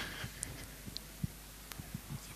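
Low steady hum of a quiet hall's PA with a few soft knocks and rubs, typical of a live handheld microphone being carried between people.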